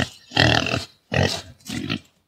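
Wild boar grunting: three short, hoarse grunts in quick succession.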